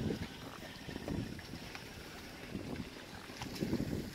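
Wind buffeting the microphone outdoors: a steady low rumble with a few soft gusts.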